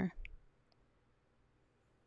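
The end of a drawn-out spoken word, then near silence with two faint clicks.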